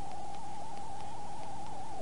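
Steady background hiss with a thin, constant mid-pitched tone running under it, the noise floor of the microphone and recording in a pause in speech.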